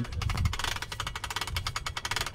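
Ratchet of a hand-cranked winch on a tripod clicking rapidly, about fifteen clicks a second, as it is cranked to hoist a sea turtle in a rope harness off the ground.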